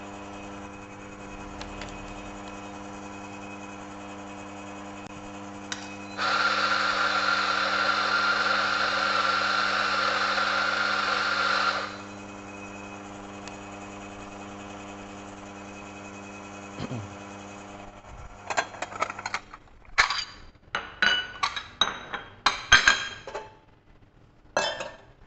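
Espresso machine running with a steady low hum while a shot extracts. About six seconds in, a coffee grinder runs loudly for about six seconds. Near the end the hum stops and a run of sharp knocks and clatter follows, from coffee-making gear being handled.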